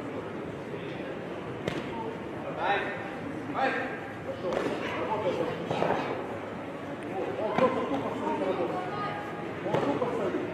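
Voices shouting in a large, echoing sports hall, with a few sharp smacks cutting through: one about two seconds in, one near eight seconds and one near the end.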